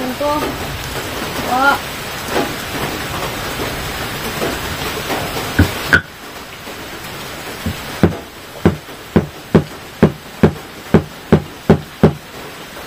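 A steady hiss for the first half that cuts off suddenly about halfway. Then a knife point struck again and again into a stone disc, about ten sharp taps at roughly two a second, chipping the stone.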